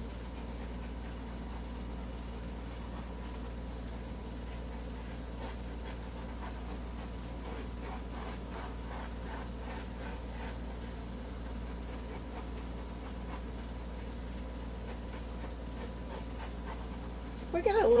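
A steady low hum of room noise, with faint soft rustling between about five and eleven seconds in.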